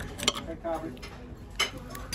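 Steel knife and fork cutting a crunchy roast potato on a ceramic plate, with two sharp clicks of cutlery against the plate: one just after the start and one near the end.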